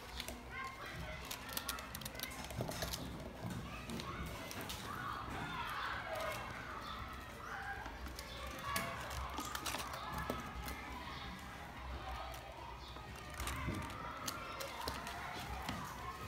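Children's voices chattering indistinctly in a room, with scattered light clicks and taps throughout.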